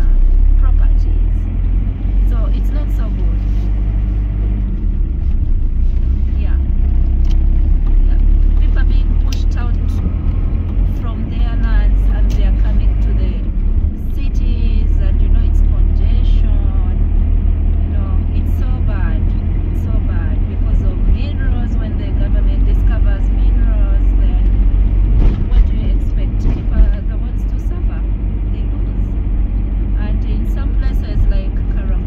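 Steady low rumble of a moving vehicle heard from inside while driving: engine and tyre noise on a wet road. Indistinct voices talk over it.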